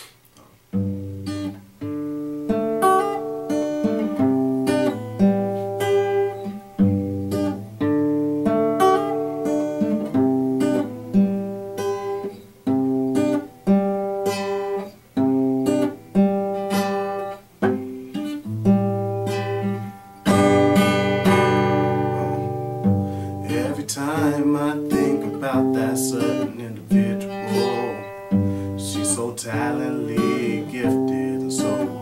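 Solo guitar playing a song's opening: picked chords in a repeating pattern starting about a second in, turning to fuller strumming about two-thirds of the way through.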